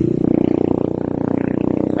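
A steady, loud low engine drone running without a break.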